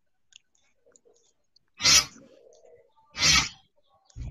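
A few faint clicks, then two short, loud bursts of breathy noise about a second and a half apart, the first trailing off into a faint hum.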